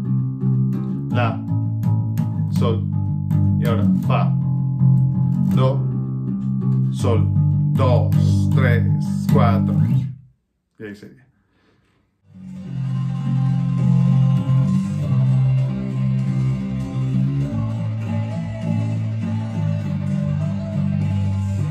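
G&L electric bass guitar playing the chorus line of held root notes F, C, A and G, changing every second or so. The notes stop for about two seconds around the middle, then come back under a fuller backing of music.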